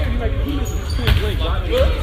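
Basketballs bouncing on a hardwood gym floor, low thuds under people talking.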